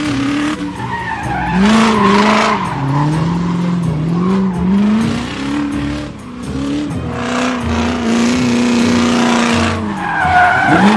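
Animated race-car engine sound effects revving, their pitch rising and falling repeatedly, with a brief lull about six seconds in.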